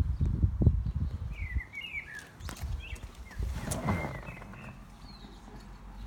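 Handling noise from a phone being moved around inside a car: rubbing and knocks, loudest in the first second or two, with a few short high chirps and a swell of noise about halfway through.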